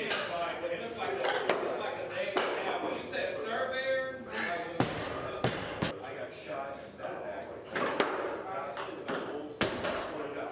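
Sharp clanks and knocks of barbell and plates in a weight room, about six of them, the loudest just before five seconds in and at eight seconds, over indistinct background voices.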